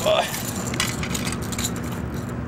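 Loose shore stones clicking and clattering a few times as a landed rainbow trout is pinned down and handled on the rocks, over a steady low hum.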